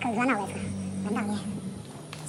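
Puppy whining: two short, high, wavering whines about a second apart.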